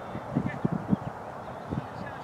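Faint distant voices calling across an open field, over irregular low rumbles on the microphone.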